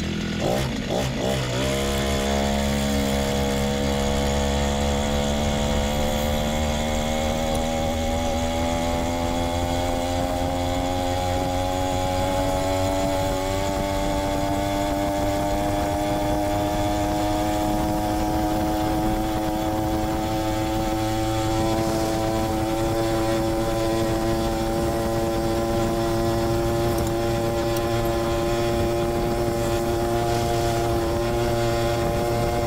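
Brushcutter engine driving a bicycle's rear tyre by friction, held at full throttle. It pulls away about a second in, then its pitch climbs slowly and steadily as the bike gathers speed.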